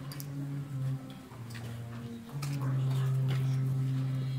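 Slow processional music: low held notes that step slowly from one pitch to another, dropping about a second in and rising again past the middle. Scattered sharp ticks and clicks sound over it.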